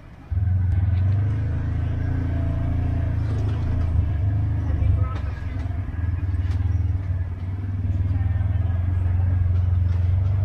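Side-by-side UTV engine running with a steady low drone as it crawls over a rocky trail, coming in suddenly a moment after the start, with a few sharp knocks along the way.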